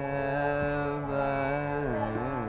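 Male Hindustani classical vocalist holding a long sung note over a steady drone. The voice slides down in a glide near the end.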